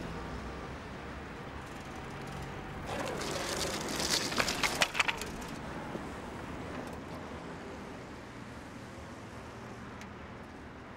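Steady hiss of rain on a wet street. Between about three and five seconds in, a louder rush of noise with a quick run of sharp cracks and clatters.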